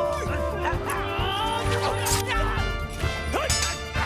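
Dramatic orchestral film score playing over a sword fight, with men crying out and the crashing hits of the fight's sound effects.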